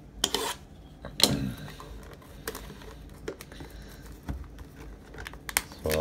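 A utility knife slitting the plastic shrink wrap on a cardboard trading-card box: two quick, sharp scratchy strokes near the start, then light clicks and crinkling of the plastic film as the wrap is worked loose.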